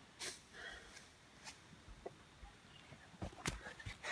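Faint breathing and scuffing from a person moving about on sand, with a few short sharp knocks about three and a half seconds in.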